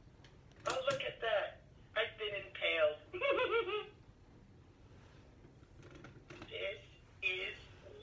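A talking Olaf toy's recorded voice playing through its small built-in speaker, sounding thin and tinny: a few short phrases in the first half and another near the end.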